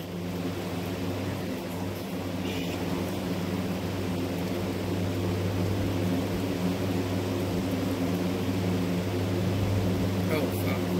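A steady low mechanical hum with a faint hiss over it, unchanging throughout.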